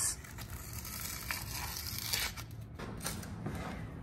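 Old wallpaper being scraped and torn off a wall with a hand scraper, in short, irregular scrapes and rips.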